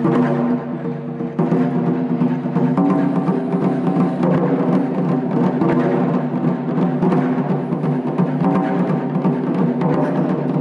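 Taiko ensemble playing Japanese drums on stands, with a fast, continuous run of strikes that barely lets up.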